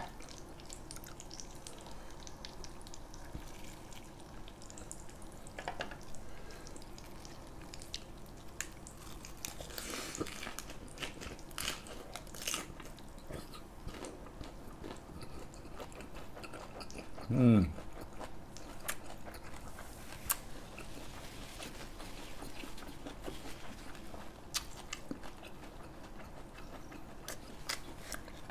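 Close-up chewing of a large mouthful of lettuce-wrapped grilled pork belly, with scattered crisp crunches and wet mouth clicks. A short hum of a voice comes about halfway through.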